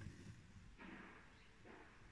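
Near silence, with faint soft rasps of embroidery thread being drawn through cross-stitch fabric, about a second in and again near the end.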